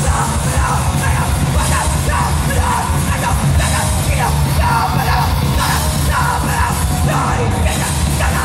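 Hardcore punk band playing live at full volume, with the singer yelling phrase after phrase over the band, heard from within the crowd.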